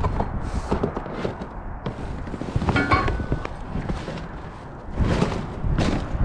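Debris in a dumpster being shifted and handled by hand: irregular thumps and knocks, with a brief clatter about halfway through and a louder crash near the end.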